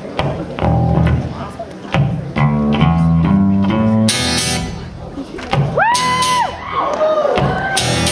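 A live rock band of electric guitars, bass and drums playing chords with heavy bass notes and drum hits. About six seconds in, a high pitched note slides up, holds and slides back down, and a shorter falling slide follows.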